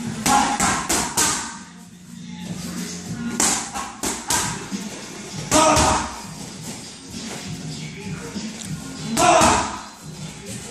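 Boxing gloves smacking focus mitts in quick punch combinations: a cluster of three sharp hits in the first second and a half, more in the middle and near the end, over background music.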